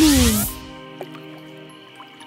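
Cartoon magic sound effect: a brief shimmering whoosh in the first half-second, over soft, steady background music.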